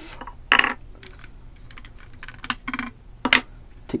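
Small hard plastic pieces of an action-figure diorama stand clicking and clattering as they are pulled off and handled: a handful of separate short clicks.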